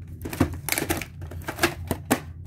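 Plastic VHS clamshell case being opened and the cassette handled and lifted out: a quick run of plastic clicks and rattles, with a sharper clack about half a second in and more near the end.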